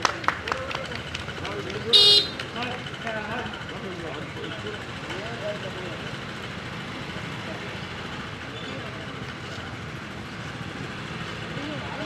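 Outdoor street sound with faint background voices and a short, high-pitched vehicle horn toot about two seconds in, the loudest sound.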